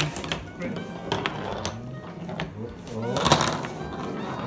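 Steel marble and the wooden and plastic pieces of a homemade marble-run contraption clicking and clattering on a tabletop: a string of sharp, irregular clicks and knocks.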